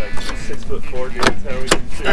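Two sharp clicks about half a second apart from the door handle and latch of a weathered Pontiac Fiero as the door is worked open.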